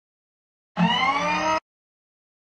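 A short logo sound effect: a pitched sound rising in pitch, starting suddenly about a second in and cutting off abruptly under a second later.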